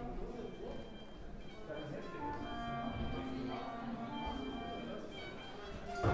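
Orchestra members practising individually during a break: scattered, overlapping held notes and snatches from strings and other instruments, no ensemble playing, with chatter in the room. The notes pile up from about two seconds in.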